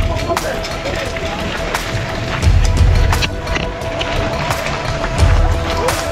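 A large crowd of hikers walking on a cobbled path, with chatter and many irregular sharp taps of feet and trekking poles on the stones. Music with a long held note runs underneath, and there are two low thumps, about halfway through and near the end.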